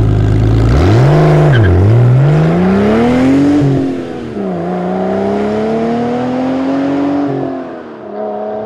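Car engine revving hard under the intro: a low, steady run, then a quick rev, a long climb in pitch that drops back, and a second long climb held high before it falls away near the end.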